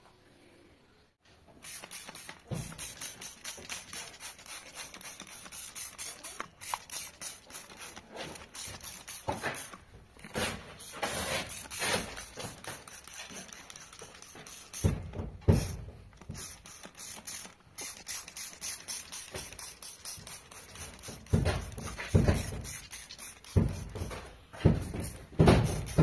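Hand trigger spray bottle squirted again and again onto fabric car upholstery: a quick run of short spray hisses, starting after a short quiet moment, with a few heavier knocks near the end as the seat is handled.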